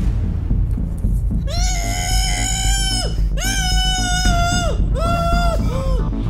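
A woman's voice holding four long, high notes, each ending in a downward fall and the later ones shorter, over a low, steady music bed.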